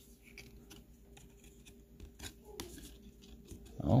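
Faint rustling and scattered light clicks of baseball cards being handled and turned over in the hand, over a faint steady hum.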